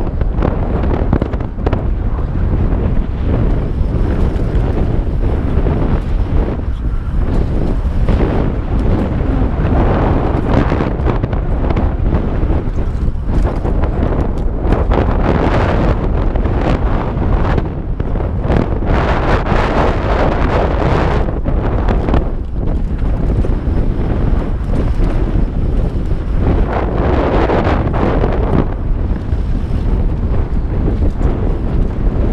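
Loud wind buffeting a chin-mounted action camera's microphone during a mountain bike descent, mixed with tyres rolling on loose dirt and frequent short knocks and rattles from the bike over bumps.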